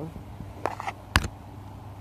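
Handling noise: a short rustle and then one sharp click a little after a second in, over a steady low hum.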